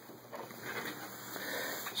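Handling noise: a soft, continuous rustle and scrape as a metal laser pointer is picked up by hand and the camera is moved, growing a little louder after about half a second.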